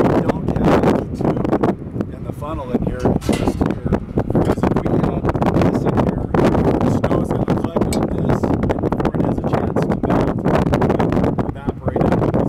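Mostly speech: a man talking, with wind rumbling on the microphone.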